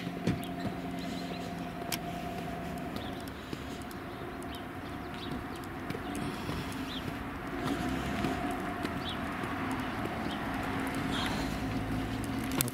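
Outdoor street sound while walking on an asphalt road: a steady noise of traffic with a faint hum and light, regular footsteps, growing a little louder in the second half.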